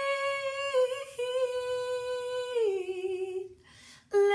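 A woman's voice singing unaccompanied, holding one long note that steps down in pitch about two and a half seconds in and fades out shortly before the end.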